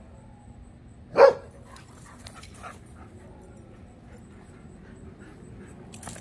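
A goldendoodle barks once, a single short bark about a second in, amid play among the dogs.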